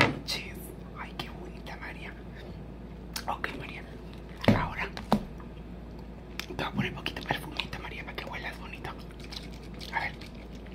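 Soft whispered, wordless mouth sounds with scattered small clicks and taps as makeup cases and cosmetic items are picked up and handled; the loudest bursts come about halfway through.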